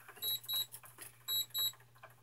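An egg incubator's electronic alarm beeping in quick pairs of short high beeps, one pair about every second.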